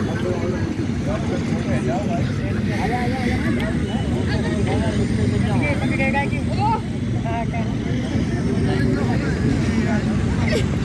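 Outdoor voices of several people talking and calling at a distance, over a steady low rumble.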